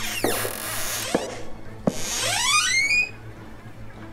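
Film suspense score made of electronic sound effects: a falling whoosh, a few sharp hits, then a rising whoosh, over a steady low drone.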